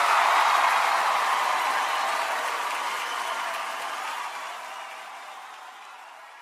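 Audience applause, steady at first and then fading out gradually.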